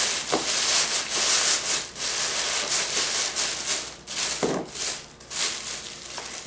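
Tissue paper rustling and crinkling in irregular bursts as it is pushed by hand into a plastic mesh basket.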